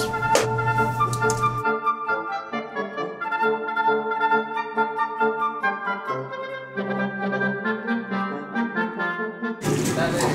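Background music: an instrumental tune led by brass-like wind instruments, its notes changing every fraction of a second. For about the first second and a half, kitchen noise with a few clanks lies under it, then only the music is left.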